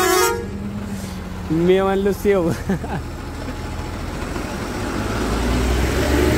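A truck horn blasts right at the start, then the engine and road noise run on under it. A short voice-like sound comes about two seconds in, and the low engine rumble swells near the end as the truck picks up speed.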